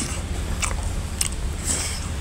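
A person chewing a mouthful of chicken curry and rice with the mouth open: wet smacks and clicks a few times, over a steady low hum.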